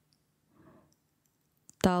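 Near silence in a pause between spoken phrases, with one faint brief sound about half a second in and a small click just before a voice starts speaking near the end.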